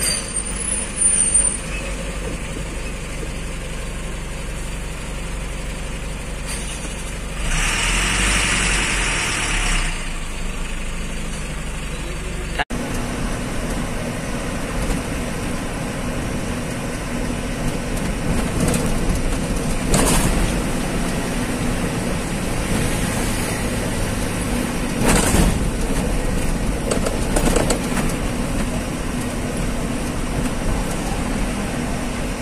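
Diesel truck running at highway speed, heard from inside the cab: a steady drone of engine and road noise, with a louder hissing swell about a third of the way in and a couple of short thumps later on.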